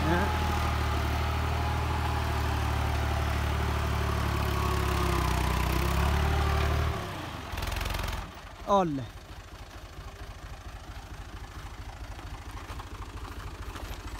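Ghazi farm tractor's diesel engine working under load as it pulls a cultivator through dry soil, a steady heavy drone. About seven seconds in it drops to a quieter, more distant chugging. A short shout with falling pitch comes near nine seconds.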